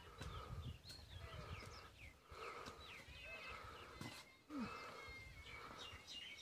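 Faint outdoor birdsong: many short chirps and twitters from small birds, with a low rumble on the microphone in the first second or so.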